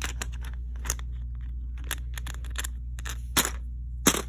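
Small plastic toy-brick pieces handled with the fingers on a plastic baseplate: irregular light clicks and taps, a little louder near the end, over a steady low hum.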